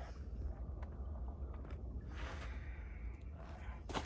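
Wind rumbling on the microphone, with a few faint, irregular footsteps on crusted snow.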